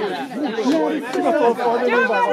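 Several people talking at once, overlapping chatter from a small group.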